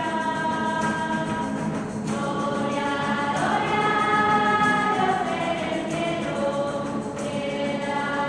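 A church choir singing a hymn in long held notes, the voices moving from chord to chord every second or two.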